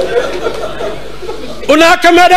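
A man's voice through a microphone and PA: quieter, broken speech, then about 1.7 s in he breaks into loud, drawn-out chanting of a masaib lament.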